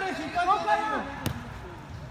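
Players shouting on the pitch, with one sharp thump of the soccer ball being struck about a second in.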